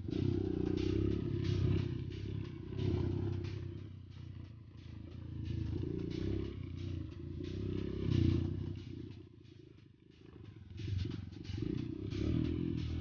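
Dirt bike engine running over a bumpy dirt trail, rising and falling with the throttle, with rattling knocks from the bumps throughout. It eases off about ten seconds in, then picks up again.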